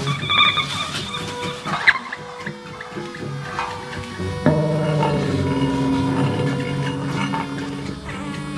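Live experimental improvised music from a small band of electric guitars, bass, drums and trumpet: sparse held tones with a sharp click about two seconds in, then a louder, dense wavering chord entering about halfway.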